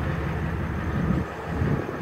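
Wind buffeting the microphone: an uneven low rumble that swells and dips, heaviest about a second in.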